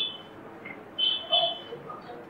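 Short, high-pitched beeps: one at the very start, then two more close together a little after a second in, over faint background hiss.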